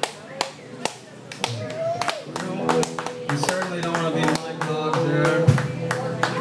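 A few scattered handclaps, then from about two seconds in, amplified electric guitar notes ringing and held as the players noodle between songs, with voices in the room.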